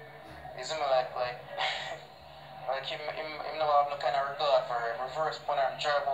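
A man talking, played back from a tablet's speaker, over a steady low hum.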